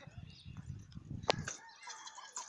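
A football being kicked once with a sharp thud about a second in, over wind rumble on the microphone. Chickens call and cluck in the background.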